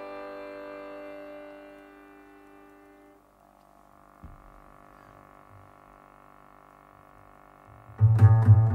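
Piano accordion holding a sustained chord that fades away over about three seconds, then a quiet pause with a soft low knock about four seconds in. The band, led by a double bass, comes in loudly right at the end.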